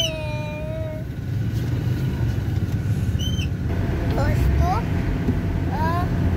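Steady low rumble of a car heard from inside its cabin, broken by a few short snatches of a high voice.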